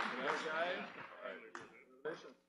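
Indistinct, overlapping voices of people on stage, with the last of a round of applause dying away; the sound fades over the two seconds, broken by a single sharp click about one and a half seconds in.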